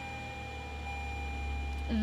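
Toyota minivan's engine idling just after a push-button start, a steady low hum heard from inside the cabin, with a faint steady high tone over it.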